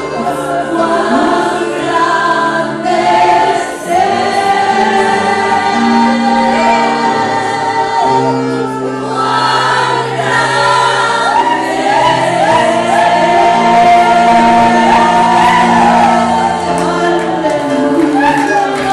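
Live gospel worship song: women's voices singing with long held notes over guitar and sustained bass chords, played through a church PA.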